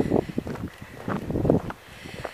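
Footsteps on a grassy farm track, short irregular crunches about twice a second, with wind buffeting the microphone.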